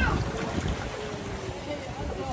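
Low, uneven rumble of wind on the microphone over churning water from duck-shaped ride boats, with faint voices of other people in the background.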